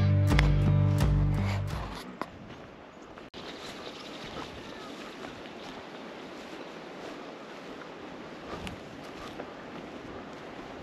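Strummed guitar music fades out over the first two seconds. After a cut, a steady hiss of wind on the microphone fills the rest, with a few faint rustles of hunters walking through tussock grass.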